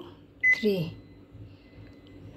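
Samsung microwave oven keypad giving one short, high beep about half a second in as a button is pressed; each press adds a minute to the cooking time.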